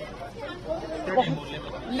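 Speech only: several people's voices chattering quietly in the background, no other sound standing out.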